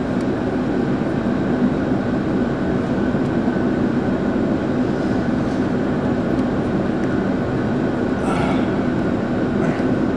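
Steady cabin noise of a jet airliner in flight, heard from inside the cabin: a dense, even rumble with a faint steady whine above it.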